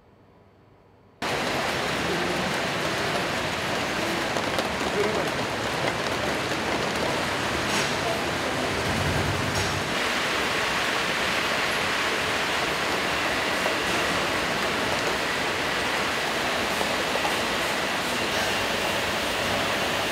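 Steady machine noise of a melon grading line, its conveyors and sorting equipment running, starting suddenly about a second in after near silence and holding even throughout, with a few faint clicks.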